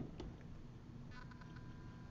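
Quiet room tone, with a faint steady high tone that comes in about a second in and holds.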